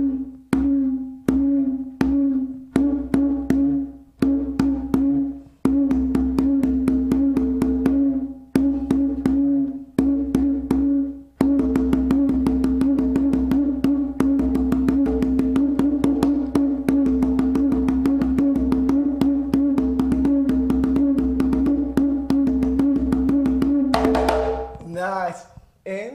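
Conga drum played with bare hands: separate strokes with short pauses, then from about eleven seconds in a fast, unbroken stream of strokes over a steady ringing drum pitch that stops about two seconds before the end.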